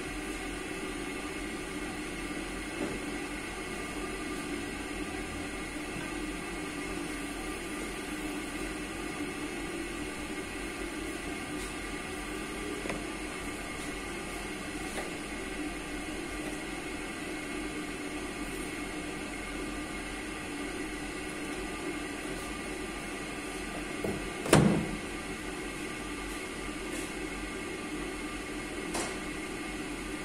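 Steady hum of a kitchen appliance running, with a few faint clicks and one sharp, loud knock about 24 seconds in.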